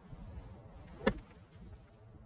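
A single crisp strike of a golf wedge on a ball from fairway turf about a second in: an open-faced flop shot.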